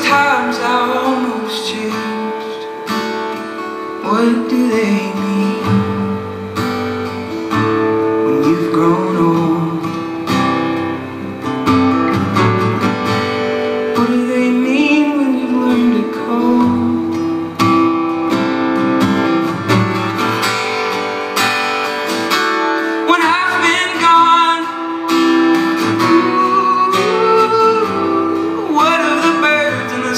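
Acoustic guitar strummed in a live solo performance, with a man's voice singing in places over it.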